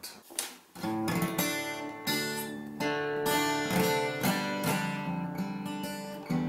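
Acoustic guitar (an Ibanez copy of a Gibson Hummingbird) strummed with the fingernails in a dropped tuning, about two chords a second from about a second in. The open low string drones with a rattling buzz against the frets, from a setup with almost no neck relief.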